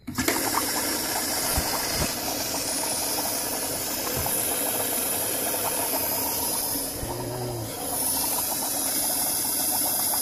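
Electric fuel pump switched on suddenly at the start, then running steadily as kerosene rushes through the hoses, bubbles in the bucket and pours from a venturi jet pump's outlet hose into a plastic gallon jug.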